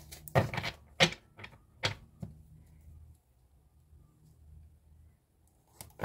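A deck of oracle cards handled by hand: five or so sharp card clicks and taps over the first couple of seconds as cards are drawn and squared against the deck, then only faint room sound.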